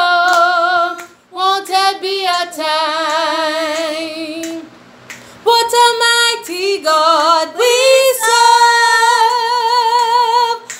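A woman singing a gospel song with children, in long held notes with vibrato, with a short break about halfway through.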